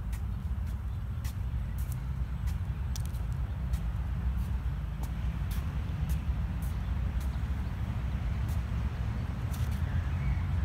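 Footsteps on a concrete walkway, a sharp click about once or twice a second, over a steady low rumble.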